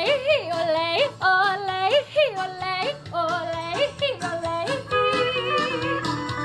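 A woman yodeling, her voice flipping back and forth between a low chest note and a high head note many times in quick succession. Near the end a bowed fiddle comes in with steadier held notes.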